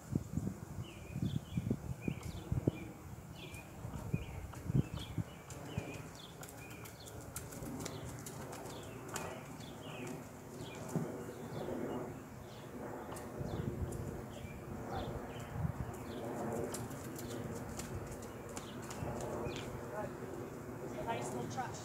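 A horse's hooves thudding on grass as it trots and canters in a circle, the thuds strongest in the first few seconds. Small birds chirp over and over in the background.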